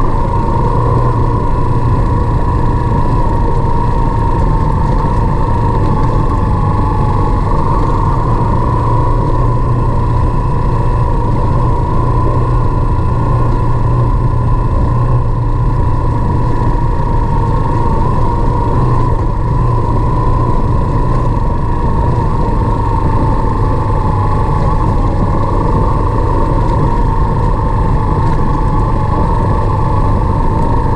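Motorcycle engine running at an even, steady pace, heard from the rider's seat on a rough dirt road: a low drone and a steady whine that wavers slightly in pitch, over constant road noise.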